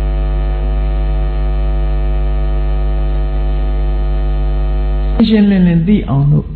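Loud, steady electrical mains hum in the recording, a buzz with a long ladder of overtones. A man's voice starts talking over it near the end.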